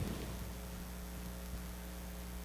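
Steady electrical mains hum, a few low steady tones over a faint hiss, with no other sound.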